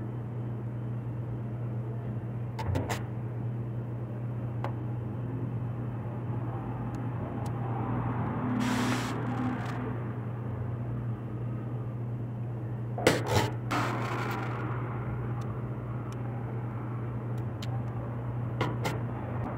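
Quiet handling sounds of cake decorating: a plastic cake comb scraping through whipped cream and a metal tray being turned, with a few light clicks, a brief swish about halfway and a cluster of knocks about two-thirds through, over a steady low hum.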